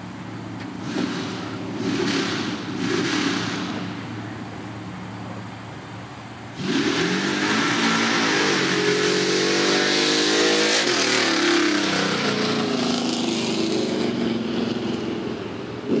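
A mud bog pickup truck's engine revs three times in short bursts. From about six and a half seconds in it suddenly goes to full throttle for a run down the mud track and holds it for several seconds, its pitch dipping and then climbing.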